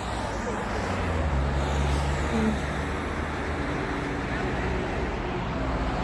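Road traffic running past, a steady hum of cars with a low rumble that swells for a couple of seconds about a second in, mixed with wind buffeting the microphone.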